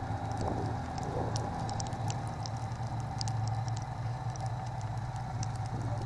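Snowmobile engine running steadily at low speed, with scattered light ticks over the drone.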